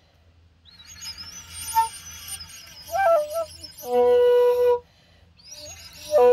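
Kalinga bamboo flute played solo in short phrases separated by pauses: a breathy, airy stretch, a brief rising figure about three seconds in, then one held lower note before another pause.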